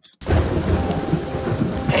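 Thunderstorm sound: steady heavy rain with a rumble of thunder, cutting in suddenly just after the start, the rumble strongest in the first half second.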